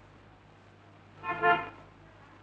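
A horn gives one short toot, about half a second long, a little over a second in.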